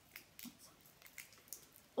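Faint handling sounds: a few soft ticks and rubs from hands working rubber balloons and plastic straws as they are taped together.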